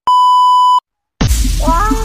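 Test-pattern beep: a single loud, steady, high tone of under a second that cuts off abruptly. After a short silence, music with a drumbeat and a melody starts loud just over a second in.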